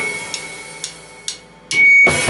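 The band's music breaks off, and three sharp drumstick clicks about half a second apart count back in. Near the end a loud steady high whine of guitar-amp feedback swells up just as the full band with drums comes back in.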